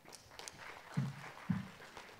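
Audience applauding in a hall, with two dull low thumps about a second and a second and a half in.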